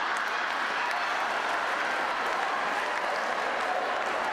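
Audience applauding steadily, a dense even clatter of many hands clapping.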